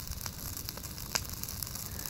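Brush fire of green pine boughs and pallet wood burning: a steady hiss and crackle with a few sharp pops, the loudest a little over a second in.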